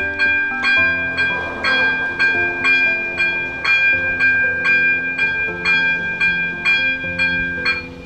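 Railway level-crossing warning bell ringing steadily, about two strikes a second, signalling that the crossing is closing for an approaching train. Background music plays underneath.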